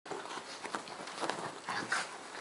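Two dogs, a Chinese crested and a black-and-white dog, play-fighting on a bed: scuffling and short knocks on the bedding mixed with brief dog vocal noises, loudest near the end.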